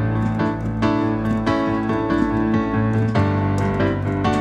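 Piano sound from a keyboard, played busily, with full chords struck several times a second and moving between G and A chords, the IV and V of D. The bass note changes about three seconds in. This is deliberate overplaying, the busy style he calls not good while someone is praying.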